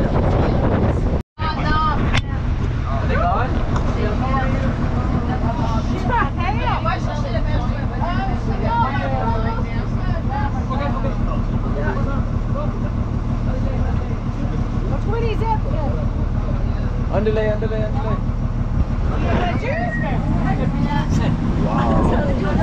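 Engine of an open-sided safari truck running steadily, with indistinct voices talking over it. The sound cuts out for a moment about a second in.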